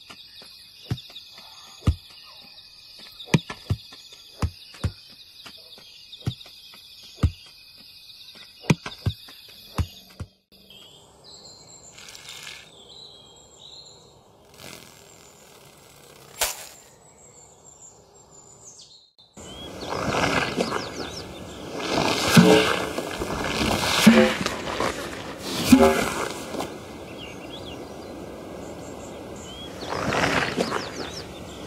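Sound-designed ambience for animated clips in three changing passages. First come irregular knocks like footsteps over a steady high chirring of insects, then a quieter stretch with a few whooshes. From about two-thirds in, a loud, dense rumble with several heavy thumps takes over.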